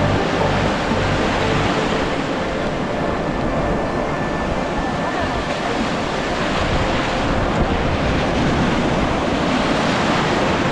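Surf breaking and washing around the legs of someone wading in the shallows, with wind buffeting the microphone.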